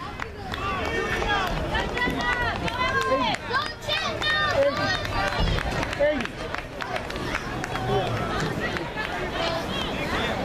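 Overlapping voices of people talking and calling close by, many at once, with no single clear speaker.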